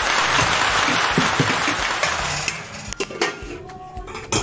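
Hot stew sizzling in a covered enamelware roasting pan, a steady crackly hiss that fades out about two and a half seconds in. A few light metal clicks follow near the end as the lid comes off.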